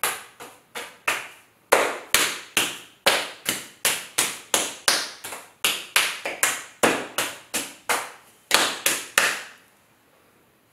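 Open hands slapping a tall mass of damp clay, a steady run of sharp slaps about two or three a second, with brief pauses, stopping about nine and a half seconds in.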